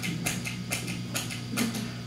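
A handful of sharp, irregular clicks, about six in two seconds, over a steady low electrical hum from the stage sound system.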